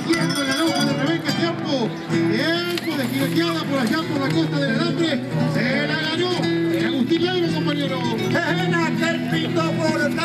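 Live acoustic guitar music with a voice singing or declaiming over it continuously.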